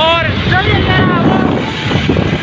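Wind buffeting the microphone and the rumble of traffic while riding pillion on a motorbike, with a voice calling out briefly in the first second.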